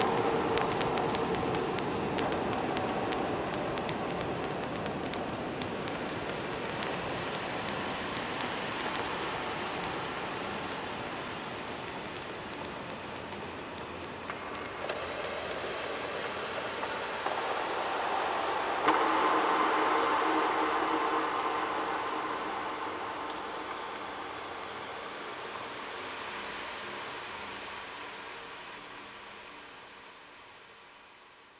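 Wordless outro of a recorded rock track: a steady hissing noise texture with faint sustained tones beneath. It swells a little past the middle, then fades out slowly.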